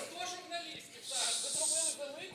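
Faint off-microphone voices of people talking in a studio, with a hissing "shh" sound lasting almost a second in the second half.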